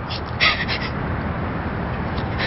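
A woman crying: short sobbing breaths and sniffles, clustered about half a second in, over a steady low background.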